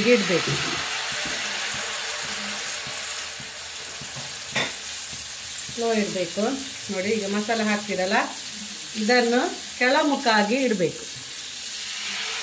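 Masala-coated fish shallow-frying in hot oil in a frying pan. The sizzle is loud as the fish goes into the oil, then settles into a steady hiss, with a single click near the middle.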